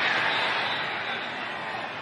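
Stadium crowd noise: a steady wash of many voices that slowly dies down.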